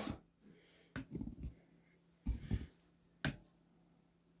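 A few small clicks and soft knocks of handling noise: a sharp click about a second in, soft knocks just after it and again past the middle, and another sharp click near the end.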